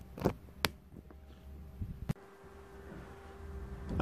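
A few faint knocks and taps of handling noise, about three in all, on a clip-on lavalier microphone as it is moved about, over a low steady hum.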